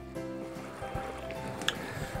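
Soft background music of sustained, held notes, with a small click near the end.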